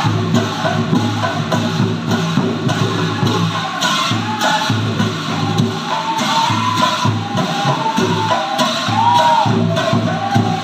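Assamese Nagara Naam devotional singing: a woman's voice leading the chant with the group, over steady rhythmic clapping and the clash of large brass bortal cymbals.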